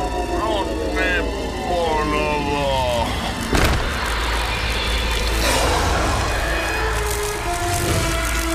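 Action-cartoon soundtrack: music over a steady low rumble, with a run of falling, squealing pitched calls in the first three seconds and a sharp hit about three and a half seconds in.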